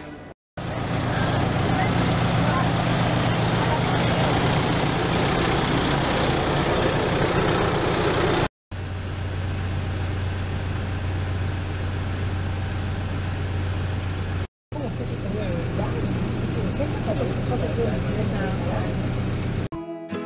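Engine and road noise of a tour minibus heard from inside the cabin: a steady low hum under a wash of noise, in four stretches broken by short silent cuts. Indistinct voices come in over the hum in the last stretch.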